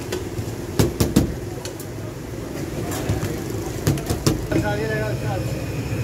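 Busy street ambience: a steady low traffic rumble with scattered sharp knocks and clicks, and people talking in the background from about the middle on.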